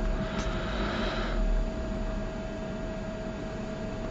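Ballpoint pen scratching on paper for about a second near the start as a line is drawn, over a steady background hum.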